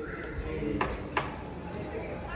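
Street background with faint distant voices and two short sharp clicks, a little under half a second apart, near the middle.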